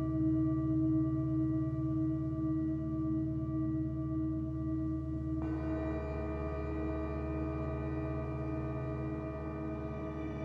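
Ambient electronic drone from modular synthesizers: several steady held tones, with a brighter layer of higher tones coming in about halfway through.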